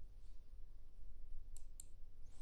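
A quiet pause of room tone with a steady low hum, broken by two faint, short clicks close together near the end.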